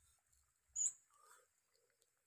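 A small animal's brief high-pitched squeak a little under a second in, followed by a fainter, lower whine.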